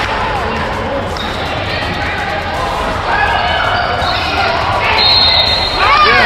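Basketball game sound on an indoor hardwood court: a basketball bouncing amid spectators' voices.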